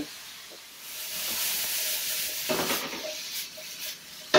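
Broccoli sizzling in a hot skillet, a steady hiss that swells about a second in, with metal tongs stirring and knocking against the pan near the end.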